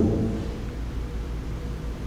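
A low, steady hum and rumble of background noise in a large hall, heard through the PA during a pause in speech.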